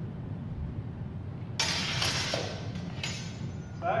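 Steel practice longswords clashing and scraping together: a sudden sharp clash about halfway through, then a second shorter one about a second later, over a low steady rumble.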